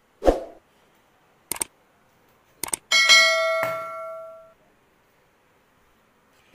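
Subscribe-button animation sound effect: a soft thump, a couple of mouse clicks, then a bright notification-bell ding that rings out and fades over about a second and a half.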